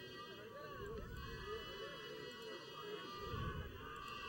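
Faint, distant voices over quiet open-air stadium ambience.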